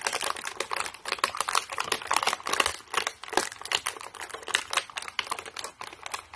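Thin vacuum-formed plastic blister tray of toy doll-house furniture being handled, crackling and clicking rapidly and irregularly under the fingers.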